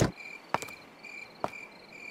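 Crickets chirping in short, evenly repeated pulses, about four a second, with two soft clicks.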